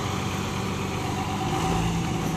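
Eicher truck's diesel engine idling steadily.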